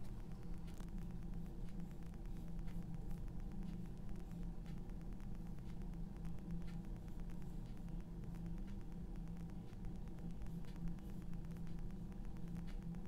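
Steady low electrical hum with a faint hiss, and scattered faint ticks over it.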